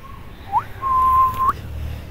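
A clear whistled note. There is a quick upward glide about half a second in, then one steady note held for under a second that flicks upward as it stops.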